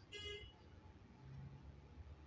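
Near silence: a low steady room hum, with one brief faint tone lasting about a third of a second, a fraction of a second in.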